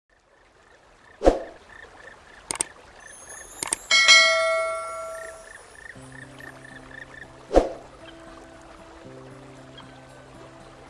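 Cartoon intro sound effects: a sharp thump about a second in, two clicks, then a bright bell-like ding with a sparkling sweep around four seconds, and another thump near the end. Gentle instrumental music with held notes begins about six seconds in, under a faint repeating chirp.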